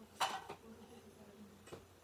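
A sharp knock about a quarter of a second in, then a fainter click soon after and another near the end, over faint room noise.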